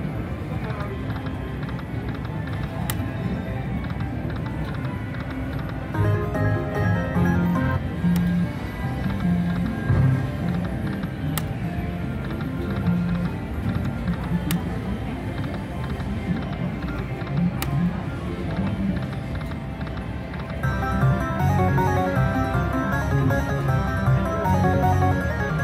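Buffalo slot machine playing its game music and reel-spin sounds over rumbling hoofbeat effects, with sharp clicks every few seconds. Near the end a melodic win jingle plays as a four-ace win counts up on the credit meter.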